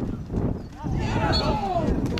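Wind buffeting the microphone in a heavy low rumble. From about a second in, footballers shout across the pitch in long calls that fall in pitch.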